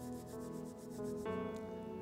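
Soft background music of sustained keyboard chords, moving to a new chord twice.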